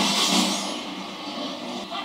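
TV drama soundtrack from a fight scene: a sudden loud burst of noise at the start that fades over about half a second, over a low sustained tone.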